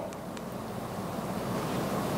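Steady room tone: a soft, even hiss with no distinct event, growing slightly louder toward the end.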